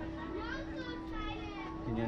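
Children's voices talking over a steady hum.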